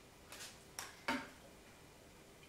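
Three short, faint clicks and rustles in the first half from hands working at a kitchen worktop, setting down a spoon and handling the brick pastry sheet and baking paper.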